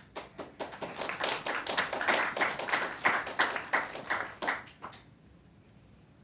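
A small audience applauding: a few dozen hands clapping, building up and then thinning out before stopping about five seconds in.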